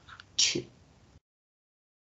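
One short burst of a person's voice or breath about half a second in, after which the audio cuts out completely to dead silence.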